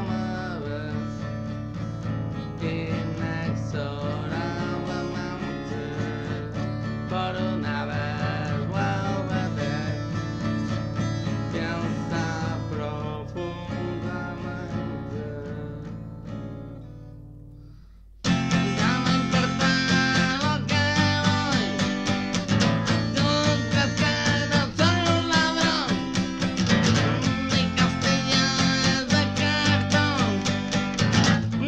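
Steel-string acoustic guitar strummed in chords. The playing fades away to almost nothing a little past the middle, then comes back suddenly much louder, with sharp, steady strums.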